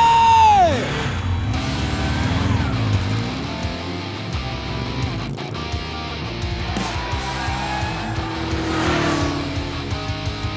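Racing motorcycle engines revving and passing over background music. A held high rev falls off sharply within the first second, and other bikes rise and fall in pitch as they go by later on.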